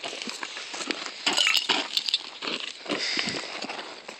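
Irregular clinks and crunches of broken glass shards and grit on gravelly ground.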